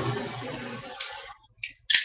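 Steady hiss of room noise fading out, with one sharp click about a second in, and clicks and rattles of hands handling objects on the table starting at the very end.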